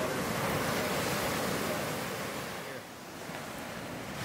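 Ocean surf: waves breaking and washing up a sandy beach, a steady rush that eases off a little about three seconds in.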